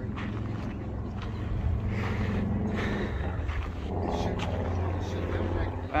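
Outdoor background at a busy market: a steady low hum with faint, distant voices.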